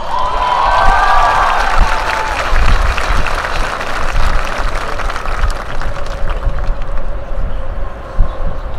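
A large crowd applauding, with cheers and whoops over the clapping in the first couple of seconds.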